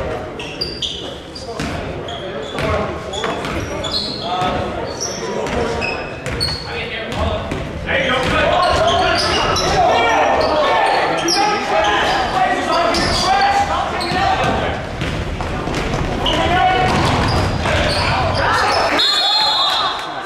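Basketball game in a gym: the ball bouncing, short high sneaker squeaks on the hardwood and players and spectators shouting, louder from about eight seconds in. Near the end, a short referee's whistle blast.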